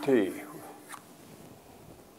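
A man's voice ends a spoken phrase at the start. Then there is quiet room tone, with one short click about a second in.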